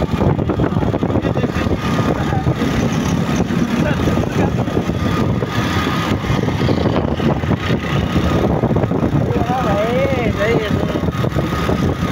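Steady road traffic passing close by, with vehicle engines, among them a heavy truck's diesel engine going past about six seconds in. A brief voice near the end.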